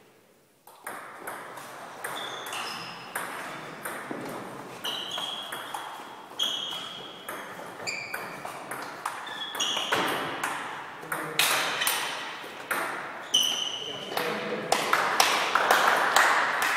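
Celluloid-type table tennis ball being struck back and forth in a rally, a quick run of sharp ball-on-bat and ball-on-table clicks, each with a short high ping. The hits start about a second in and grow louder towards the end.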